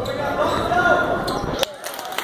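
Basketball gym sound: spectators' voices and calls echoing in the hall, with the knocks of a basketball bouncing and one sharp knock near the end.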